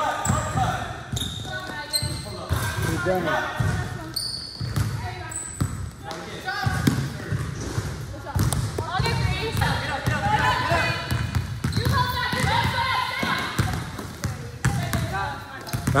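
A basketball being dribbled on a hardwood-style gym floor, with sneakers giving short high squeaks now and then, amid players' voices.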